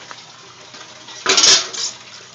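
A loud, short scraping rustle a little past halfway, with a smaller one just after, from the hand and the handheld camera brushing against cucumber leaves and a plastic bucket rim.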